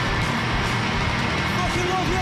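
Live rock band playing loudly on a big stage: drum kit with cymbal crashes over a dense wash of electric guitars, with a few sliding melody notes near the end.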